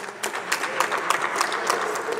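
Scattered applause: a few people clapping unevenly, sharp separate claps over a low hubbub.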